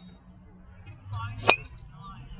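CorteX 9-degree driver striking a golf ball off the tee: a single sharp crack about one and a half seconds in, with a brief ring.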